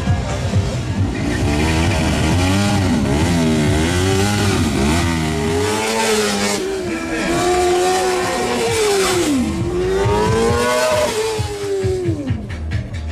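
A vehicle engine revved up and down again and again, its pitch rising and falling in long sweeps. Music with a low beat runs under it for the first half.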